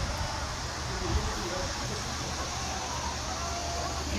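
Steady low rumble and road noise of a moving car, heard from inside the cabin.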